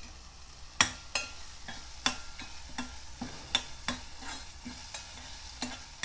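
A ladle stirring thick tomato-onion masala in a non-stick pot, with irregular scrapes and taps against the pot over a faint sizzle. The masala has been simmered about five minutes under a lid.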